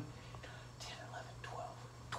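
A man counting under his breath in faint whispers, over a steady low hum.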